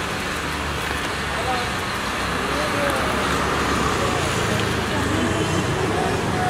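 Street noise: a steady rumble of road traffic with a low engine hum, and people talking in the background.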